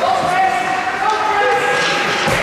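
A voice shouting a long, drawn-out call in an echoing indoor ice rink, held for about a second and a half.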